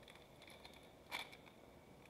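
Near silence, broken a little over a second in by one brief crinkle of a foil trading-card pack wrapper being handled.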